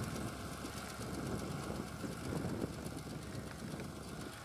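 Tractor engine running steadily with a low rumble as it pulls a boom crop sprayer across a field.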